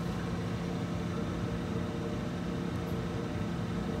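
UniMac commercial washer-extractor running its wash stage: a steady machine hum with a low steady tone.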